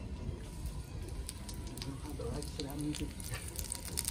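Corn tortillas dipped in birria consommé frying in oil on a flat-top griddle, sizzling with a steady hiss and scattered crackling pops. The sizzle grows louder near the end. Faint voices sound in the background.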